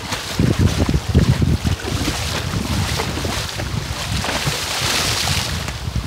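Wind buffeting the phone's microphone in gusts, over the hiss of shallow sea water washing around. Near the end the water hiss swells louder and brighter, like splashing.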